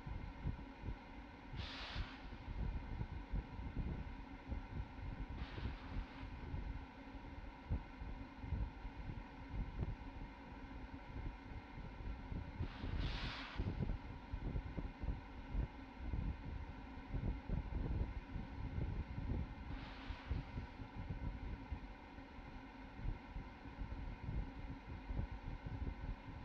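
Launch-pad ambience around a Falcon 9 during propellant loading: low, uneven wind rumble on the microphone under a steady hum. Four short hisses come several seconds apart, the loudest about 13 seconds in.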